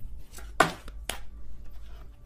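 Tarot cards being drawn from a deck and laid down on a table: a few sharp taps, the loudest about half a second in and another about a second in.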